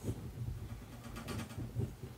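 AR-15 lower receiver and receiver extension tube being turned and handled in the hands: soft scuffs of hands on metal and polymer, with a few light clicks in the second half.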